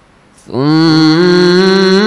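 A man reciting the Quran in a melodic style, coming in about half a second in on a long held note that rises at first, then wavers.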